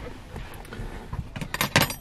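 Quiet handling noise of food being arranged in a plastic food box, with a quick run of light clicks and taps in the second half.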